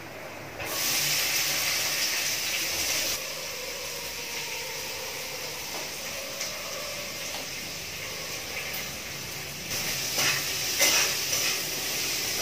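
Chopped onions sizzling in hot oil and garlic in a kadhai, flaring up loudly about a second in and then settling to a steady sizzle. Near the end the spatula stirs the pan, bringing the sizzle up again with a few scrapes.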